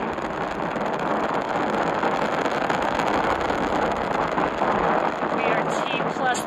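Steady rushing roar of a Falcon 9's nine Merlin engines firing during first-stage ascent, heard on the launch webcast audio.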